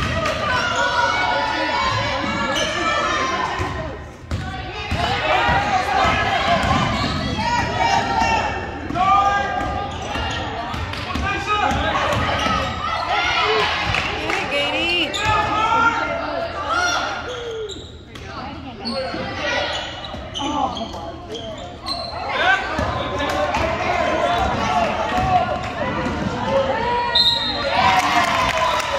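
Basketball game in a school gym: a ball bouncing on the hardwood court among many voices of players, coaches and spectators calling and talking, all echoing in the large hall.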